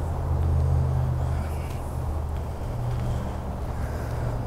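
Idling vehicle engine: a steady low hum that swells slightly in the first second.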